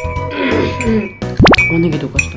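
Light background music with plinking notes, cut across about one and a half seconds in by a loud, quick upward-sliding 'whoop' sound effect.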